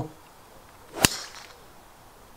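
Golf driver striking a ball off the tee: a single sharp crack about a second in, with a short swish of the club around it.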